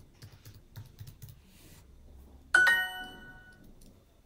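Typing on a computer keyboard: a run of soft key clicks. About two and a half seconds in, a bright, ringing chime fades over about a second: Duolingo's correct-answer sound.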